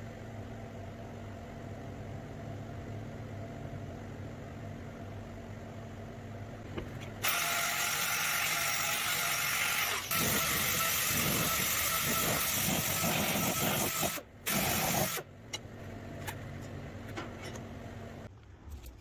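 A steady low machine hum. About seven seconds in, a much louder, even hissing rush of noise starts suddenly, runs about seven seconds with a brief dip, cuts off, and returns once for under a second.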